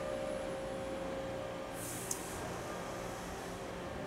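Steady background noise of a CNC machine-shop floor, with a faint steady tone through the first half and a brief high hiss about two seconds in.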